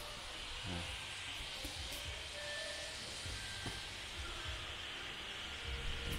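Steady hiss of forest background sound, with a few faint low knocks scattered through it.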